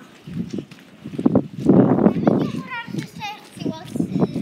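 Children's voices talking, with a short burst of rough noise about two seconds in.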